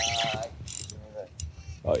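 Spinning fishing reel clicking and whirring in short spurts under the pull of a hooked jack crevalle during the fight.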